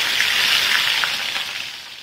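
Chopped onions sizzling loudly as they hit hot oil in a kadai, an even frying hiss that fades near the end as the oil settles.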